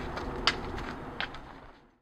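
Outdoor background noise with a few light clicks, fading out toward the end.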